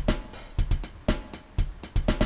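A simple drum-machine beat looping from the WerkBench step sequencer on iPad: sampled kick, snare, and closed and half-open hi-hats at 120 BPM.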